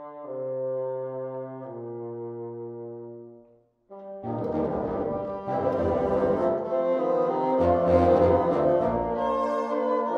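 Bassoon ensemble playing held chords, the low part stepping down, that fade out about three and a half seconds in. After a short gap, a fuller, busier passage with deeper bass starts.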